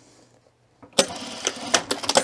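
Juki industrial sewing machine starting suddenly about a second in and running briefly to stitch a short tack through layered fabric, with a few sharp clicks near the end.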